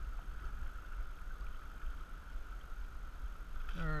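Steady rush of moving river water around a canoe, with a low wind rumble on the microphone.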